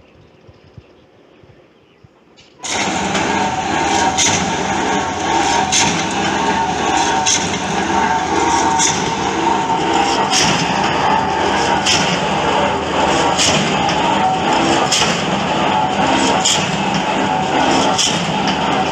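Pile-drilling rig running loudly, its machinery giving a steady din with a sharp knock repeating about every one and a half seconds. The sound starts suddenly a few seconds in, after a quieter stretch.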